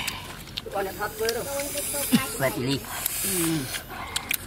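Men's voices talking in low tones, mixed with a man hissing air out through pursed lips and the clicks and smacks of eating.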